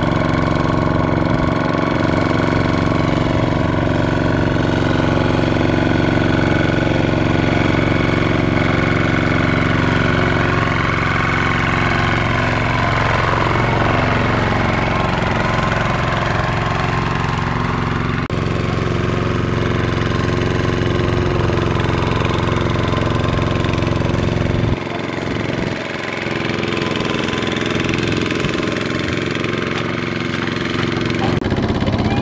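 Single-cylinder diesel engine of a Kubota RT155 walking tractor running steadily under load as it hauls a loaded trailer through deep mud. Its pitch wavers slightly in the middle. Near the end the sound abruptly turns quieter and thinner, losing its low end.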